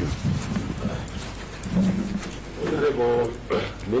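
Rustling and low knocks of handling noise picked up by the table microphones as people move and pass documents, with a man's voice starting about three seconds in.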